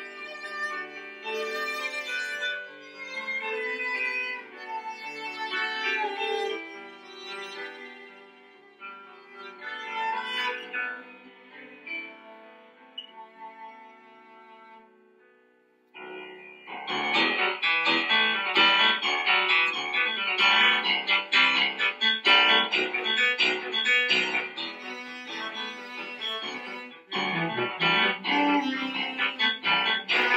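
Cello playing a tango with piano accompaniment. About halfway through, the cello line fades out and the piano carries on alone, louder and in dense rhythmic chords, and the cello comes back in near the end.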